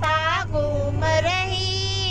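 A woman singing a Hindi devotional song (bhajan) to Balaji into a handheld microphone. Her voice moves through a short phrase, then holds one long note from about halfway through.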